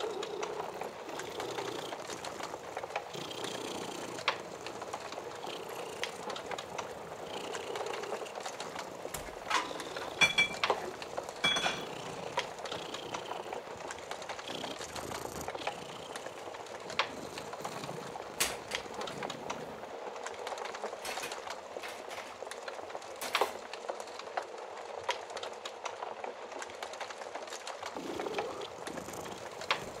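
Crackling fire with frequent sharp pops, the loudest clustered about ten to twelve seconds in and again past the twenty-second mark, over a steady, rhythmic cat purr.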